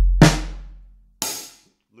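A deep Roland 808 sample boom from the hybrid kit's sample pad dies away over the first second. Two sharp drum hits fall about a second apart over it.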